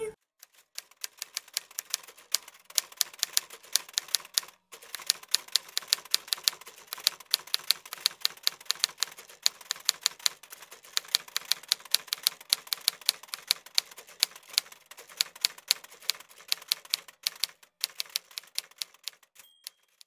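Rapid, irregular clicking of keys being typed, several strokes a second with a couple of brief pauses, ending with a short high ding.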